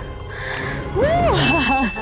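A bright ding sound effect: one steady high chime lasting about half a second, starting near the end, laid over a voice with a sweeping pitch.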